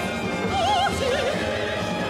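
Soprano singing with a wide vibrato over a symphony orchestra. A high note is held briefly about half a second in, then drops to a lower note.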